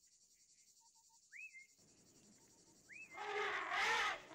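Two short rising bird whistles about a second and a half apart, over faint outdoor background that swells slightly near the end.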